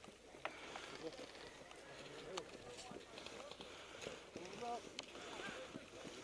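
Faint, indistinct voices of several people talking at a distance, over footsteps and gear rustle on dry ground. A couple of sharp clicks come about half a second and two and a half seconds in.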